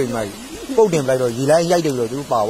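Speech: a man's voice talking.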